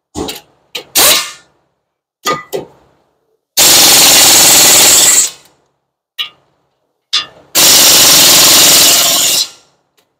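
Impact wrench driving in and tightening the brake caliper bracket bolts: a few short bursts, then two longer runs of about a second and a half to two seconds each, one around the middle and one near the end.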